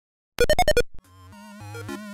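Channel intro jingle in a chiptune, video-game style: five quick bright electronic blips stepping up and back down in pitch, then a stepping synth melody fading in.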